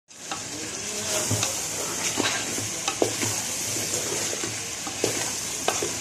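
Beef bones frying and sizzling in a metal pot while a spoon stirs and scrapes against the pot, with sharp clinks every second or so, the loudest about three seconds in.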